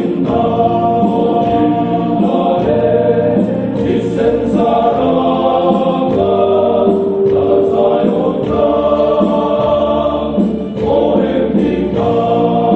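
A men's group of about a dozen voices singing a Mizo song together, in long held notes.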